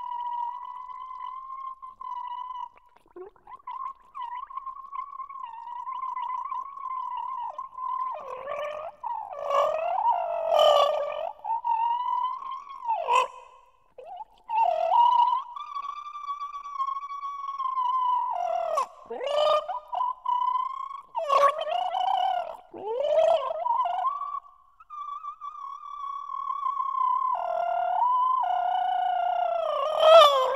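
Gargling performed as a piece of contemporary music: a voice holds a steady pitch through water in the throat, broken by louder bubbling passages and sudden swoops down in pitch, with two short breaks.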